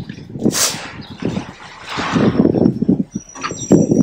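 Outdoor city street noise through a phone's microphone: passing traffic with irregular low knocking and rumbling from the phone being carried, and a thin high tone that comes in near the end.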